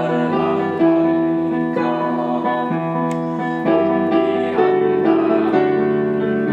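Solo piano playing a transcription of a song, held chords changing about once a second.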